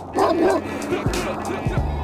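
Intro music with a steady beat, with a loud dog bark sound effect about a quarter of a second in.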